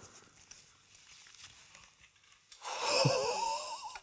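Faint rustling of a padded gig bag as an electric guitar is drawn out of it. About two and a half seconds in comes a breathy, high-pitched, wavering vocal 'ooh' of amazement, which is the loudest sound.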